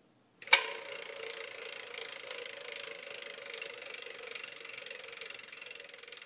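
A sharp click about half a second in, then rapid, steady mechanical clicking like a ratchet.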